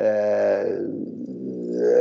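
A man's voice holding one long hesitation sound, a drawn-out "eh", for about two seconds between phrases.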